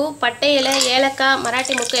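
A woman speaking. Under her voice, a light sizzle begins about half a second in as whole spices are tipped into hot oil in an aluminium pressure cooker.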